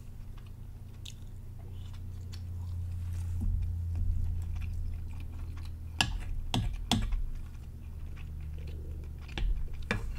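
Close-miked chewing of soft tofu and rice, with small wet mouth clicks throughout. A few sharper clicks of a wooden spoon against a ceramic plate come about six to seven seconds in, over a low steady hum.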